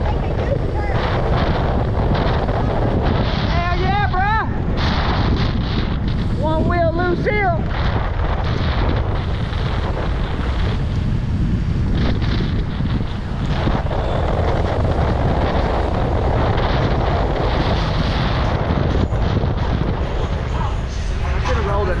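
Steady, loud wind rush on a helmet-mounted microphone from riding a fast electric scooter. Two brief wavering pitched sounds cut through it about 4 and 7 seconds in.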